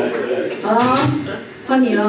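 Voices talking, with dishes and cutlery clinking.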